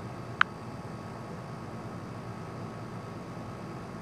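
Steady background hiss with one short, sharp click about half a second in.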